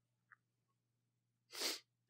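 Near silence with a faint low hum, then, about one and a half seconds in, a man's short sharp in-breath close to the microphone.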